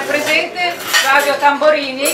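Cutlery and dishes clinking at a dinner table while a woman speaks.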